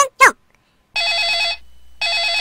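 Telephone ringing sound effect: an electronic trilling ring, one burst of about half a second about a second in, with the next burst starting just at the end.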